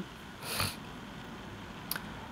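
A short breath drawn in by the speaker about half a second in, then a faint mouth click near the end, over quiet room tone.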